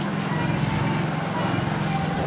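A motor engine idling with a fast, even putter, under faint background talk.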